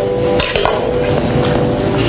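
Offering plates clinking against each other as they are handed over and stacked, with a couple of sharp clinks about half a second in, over a held musical note that fades out.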